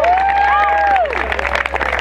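Audience applause and cheering as a live band's song ends. A long held note bends and falls away about a second in, under scattered claps.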